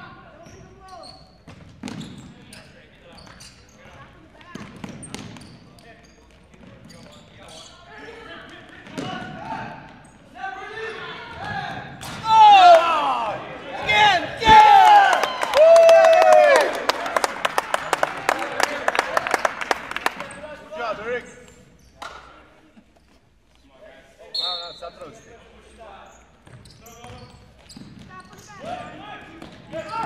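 Futsal players' sneakers squeaking on a hardwood gym floor, in a loud cluster of sharp squeals about halfway through, then a rapid run of sharp ticks. Scattered thuds of play come before and after.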